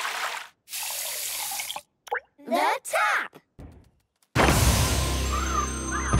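Cartoon water sound effects: a rush of water up a pipe, then a gush from a tap, followed by brief sliding vocal sounds. After a short silence, music with a steady bass starts about four seconds in.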